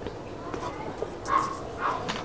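Two short yelping calls from an animal in the background, about a second and a half in and again near the end.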